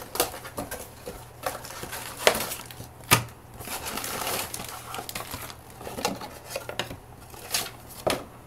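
Unboxing handling noise: a cardboard box opened and emptied onto a desk, with a plastic bag of dock parts crinkling and a string of sharp knocks and taps, the two loudest a second apart near the middle.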